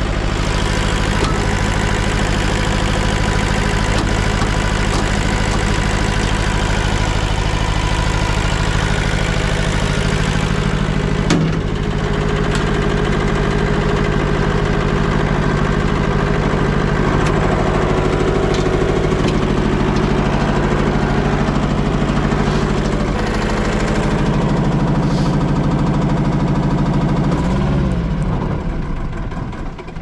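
Diesel engine of an IHI mini excavator running steadily, now starting again after its no-start fault was repaired, with one brief clunk about eleven seconds in. Its note shifts around two-thirds of the way through, then the engine winds down and stops near the end.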